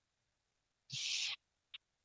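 A short rush of noise, about half a second long, a second in, then two faint sharp clicks from someone working a computer as a new browser tab is opened.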